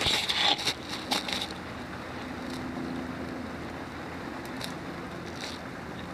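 Small gasoline-doused wood campfire flaring up and crackling: a burst of crackles and pops in the first second and a half, then a few scattered pops over a steady hiss.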